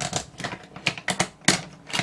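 Plastic snap-fit clips of a small electronic device's case clicking and snapping as the case is pried open by hand: a quick series of sharp clicks, the loudest about one and a half seconds in.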